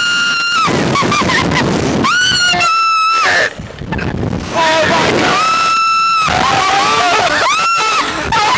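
Riders on a reverse-bungee slingshot ride screaming in flight: a series of long, high screams, each held on one pitch for about a second, with a rushing noise between them.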